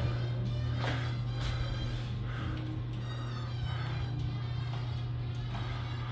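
Vinyl jazz record playing quietly in the room, under a steady low hum.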